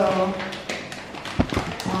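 Thin plastic bag crinkling and crackling as it is torn and pulled open by hand, with one dull knock about one and a half seconds in.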